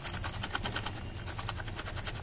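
Steady low electrical hum from an electric glass-top hob heating a small pan of honey, with a faint, fast crackle over it.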